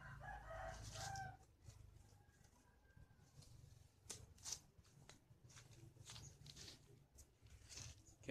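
A faint, distant rooster crowing once, lasting about a second at the start, followed by near silence with a few soft rustles about four seconds in.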